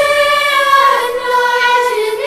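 A choir of young voices singing long held notes.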